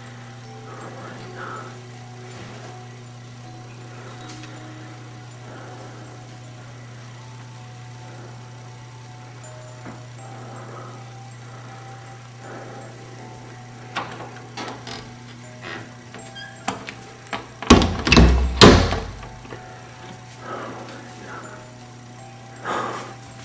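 A steady low hum, then from about two-thirds of the way in a run of clicks and knocks, ending in two loud thumps. These are handling sounds around a door.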